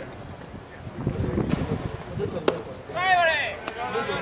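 A baseball pitch landing in the catcher's leather mitt with a single sharp pop about two and a half seconds in, followed half a second later by a short, high-pitched shouted call. Low spectator talk runs underneath before the pitch.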